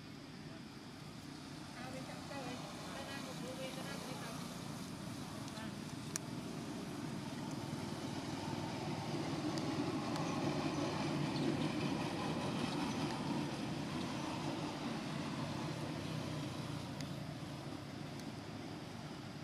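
Low, steady engine noise from a passing motor vehicle, swelling to its loudest about ten seconds in and then fading, with faint voices in the background.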